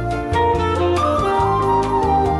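Smooth jazz instrumental: a flute-like lead melody over a moving bass line and a steady drum beat.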